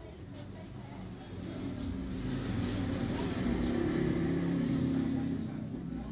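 A motor vehicle's engine going by, swelling to its loudest about four seconds in and then easing off.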